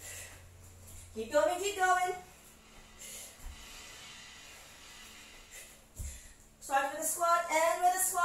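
A woman's voice sounding twice in drawn-out, gliding vocal sounds, about a second in and again near the end, the effortful voicing of someone mid-way through a jumping plank exercise. A soft thud comes just before the second.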